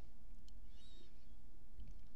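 Quiet room tone: a steady low hum, with a couple of faint light clicks and a brief faint high sound about a second in.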